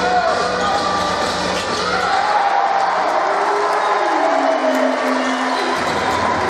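Crowd noise in an indoor basketball gym during live play: many voices and shouts, with a basketball bouncing on the hardwood court. One voice holds a long, drawn-out call in the second half.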